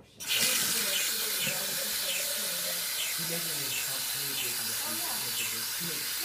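Water from a kitchen faucet running steadily into a plastic shaker bottle held in the sink. It starts about a quarter second in.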